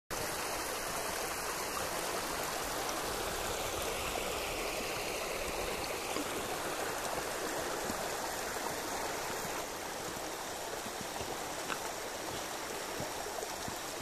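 Steady rushing of running water, a little quieter over the last few seconds.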